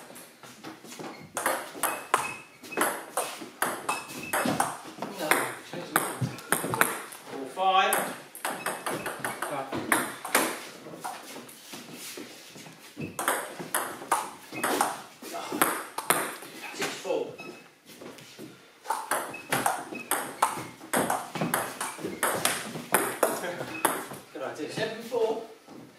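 Table tennis rally: the ball clicking back and forth between the rubber bats and the Cornilleau 740 table in quick runs, with a couple of brief lulls between points.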